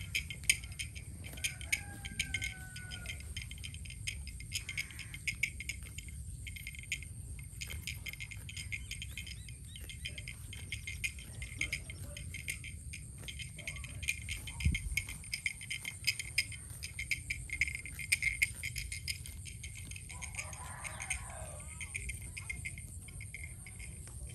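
Field insects chirping and rattling in a steady, dense high chorus, with a low rumble underneath and a brief falling whistle about two seconds in.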